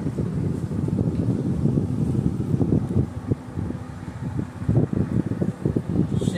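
Low, fluttering rumble of moving air buffeting the microphone, with no speech.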